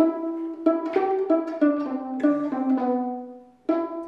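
Plucked strings picking out a melody one note at a time, about three notes a second. The phrase dies away about three and a half seconds in, and a new note starts just after.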